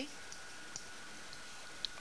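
Four faint small clicks of a stylus tapping on a writing tablet as a letter and a fraction bar are drawn, over quiet room tone with a faint steady high whine.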